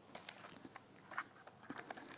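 Faint, scattered clicks and rustles of a cardboard knife box being handled.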